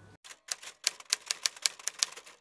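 Typewriter sound effect: a quick, uneven run of sharp key clicks, as text is typed onto the screen.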